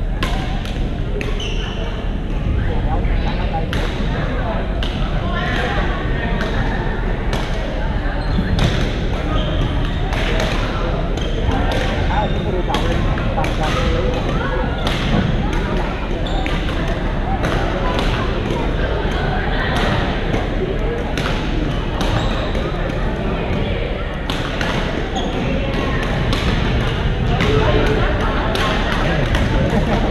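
Badminton rackets hitting shuttlecocks on several courts at once: many sharp, irregular smacks a second or so apart, over a constant murmur of players' voices echoing in a large gymnasium.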